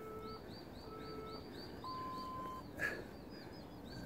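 Outdoor birdsong: small birds chirping, a quick run of short high notes repeated several times a second, with a few short steady whistled tones between them. A single harsher, louder call comes about three seconds in.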